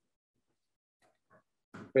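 Near silence with two faint short sounds about a second in, then a man starts speaking near the end.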